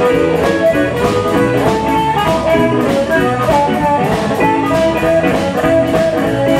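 Live blues band playing an instrumental passage: electric guitar and drum kit keeping a steady beat, with long held melody notes over it.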